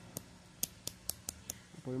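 Rotary range selector of a handheld digital multimeter being turned, clicking through its detents about six times in quick, even succession as it is set to the continuity (buzzer) range.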